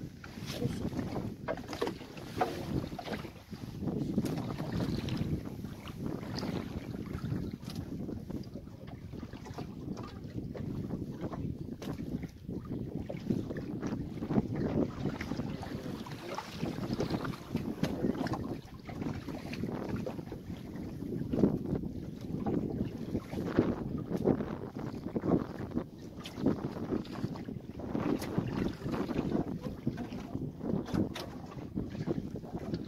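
Wind gusting on the microphone over water lapping at a small open boat's hull, with a few light knocks.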